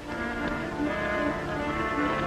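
Orchestral film score with brass, holding sustained chords that shift about a second in.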